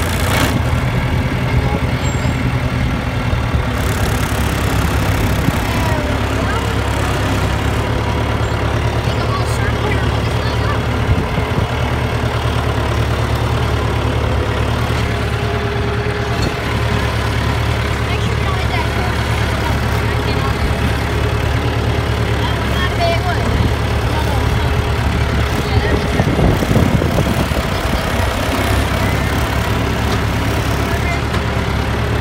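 John Deere tractor's diesel engine running steadily while pulling a grain drill, heard from the operator's seat.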